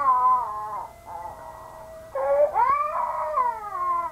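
Two long crying wails: the first falls in pitch, and the second, about two seconds in, rises and then falls away. A faint steady held note runs underneath.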